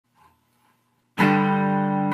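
Three-string cigar box guitar in open G (G-D-G) struck once about a second in, the chord starting suddenly and ringing out steadily at one pitch.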